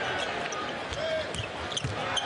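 Basketball dribbling on a hardwood court over the steady noise of an arena crowd.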